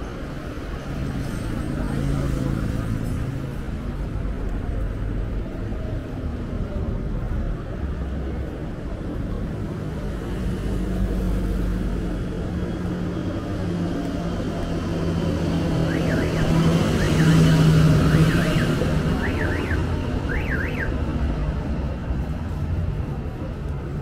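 Road traffic passing along a city street, a steady rumble with one vehicle's engine droning louder as it passes close, loudest about three-quarters of the way through. Near the end comes a run of quick rising-and-falling high chirps, like a car alarm.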